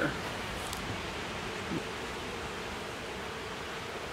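Honeybees humming around an open nuc hive: a faint, steady drone under an even background hiss.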